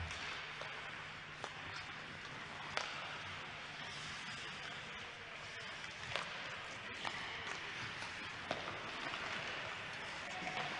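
Ice hockey play in an empty arena: skates scraping on the ice under a steady hiss, with several sharp clicks of sticks striking the puck.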